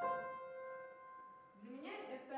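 An upright piano chord rings on and slowly fades after being struck. A woman's voice begins near the end.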